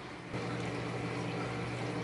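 Aquarium equipment running: water trickling over a steady low hum, the level stepping up slightly about a third of a second in.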